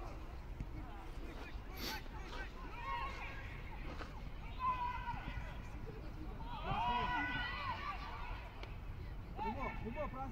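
Shouts and calls of football players across an open pitch, too distant to make out, several short calls with the loudest about seven seconds in, over a steady low background rumble. A single sharp knock about two seconds in.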